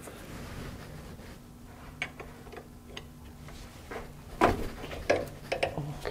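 Metal clicks and knocks of a wrench on the drain plug of a Porsche 356 transaxle as the plug is cracked loose, with a louder knock about four and a half seconds in. A steady low hum runs underneath.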